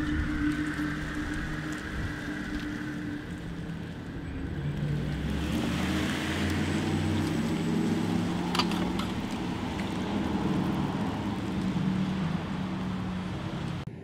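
Porsche Taycan 4S electric car rolling slowly past at low speed: a low, steady electric hum that steps up in pitch, with tyre noise on concrete growing louder as it goes by about halfway through.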